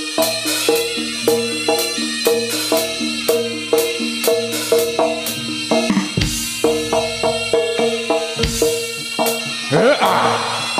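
Live jaranan gamelan accompaniment: drum strokes and pitched struck notes in a steady, fast beat of about three strikes a second.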